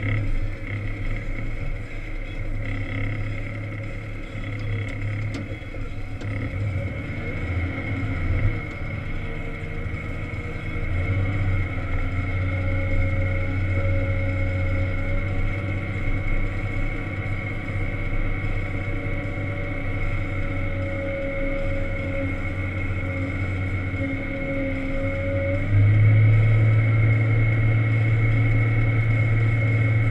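Volvo L70 wheel loader's diesel engine heard from inside the cab, running steadily under load while pushing snow, with a steady high whine over it. About 26 seconds in the engine steps up louder and deeper.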